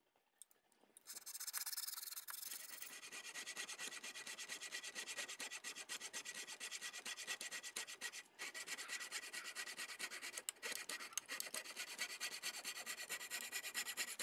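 Coping saw cutting a walnut block: quick, steady back-and-forth strokes of the fine blade rasping through the wood, starting about a second in, with two brief pauses.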